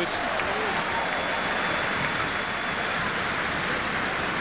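Crowd noise from a large football stadium: a steady wash of many voices in the stands.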